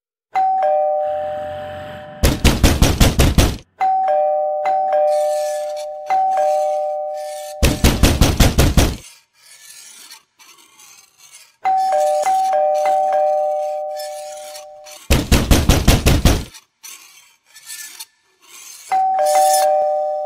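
Electric doorbell's two-note ding-dong, pressed over and over in quick succession, broken three times by about a second and a half of rapid, loud banging on a door.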